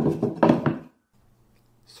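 Wooden cheese press being handled: the flat wooden follower is pushed and slid into the wooden mould box, wood rubbing and knocking on wood for just under a second, with a couple of sharp knocks in the middle. A faint low hum follows.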